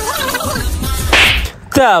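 Background music with a steady beat, cut across about a second in by a short, sharp swish sound effect. The music then stops abruptly, and a voice starts right at the end.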